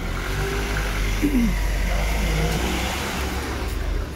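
A motor vehicle passing on the street: a low engine rumble and road noise that swell in the middle and ease off near the end.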